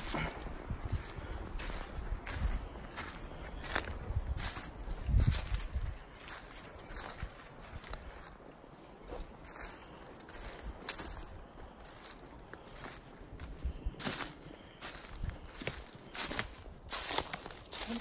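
Footsteps crunching through dry leaf litter, irregular, with a low rumble in the first few seconds.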